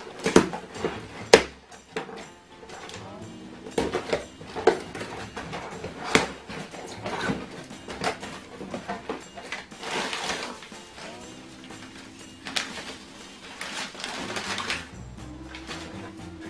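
Cardboard box flaps being pulled open along cut packing tape, then crumpled newspaper packing rustled and crackled by hand. Two sharp rips about a second apart come at the start, followed by irregular crinkles, all over background music.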